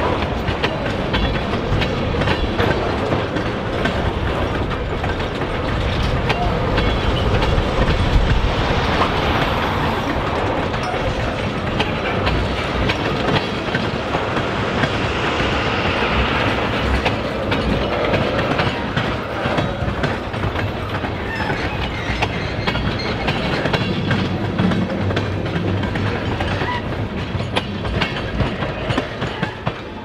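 A freight train of autorack cars and tank cars rolling past, its steel wheels clicking over the rail joints in a continuous stream over a steady rumble.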